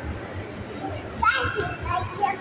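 A toddler's brief high-pitched squeal about halfway through, over a steady low background rumble.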